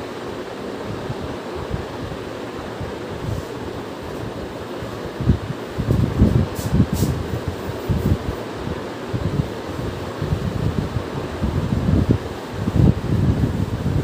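A cloth being wiped across a whiteboard: uneven rubbing strokes that start about five seconds in, over a steady low rush of air noise.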